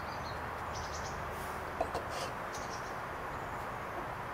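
Steady outdoor background noise with faint high chirping through the middle, and one small soft click just under two seconds in.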